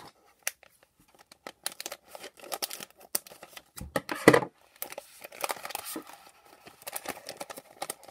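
A foil-plastic toy blind bag being torn open and crinkled by hand, with irregular crackling throughout and one louder burst about halfway through.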